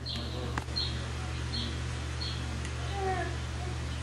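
Poodles whining softly at a glass door, a string of short high whines with a longer falling whine about three seconds in.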